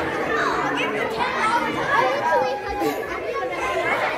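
Many children chattering and talking over one another at once, an excited crowd of young voices.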